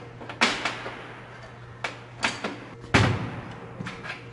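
Metal rocker-arm parts handled on a steel workbench: a few sharp metallic knocks and clanks. The loudest is a heavy clank with a low thud about three seconds in. A steady low hum runs underneath.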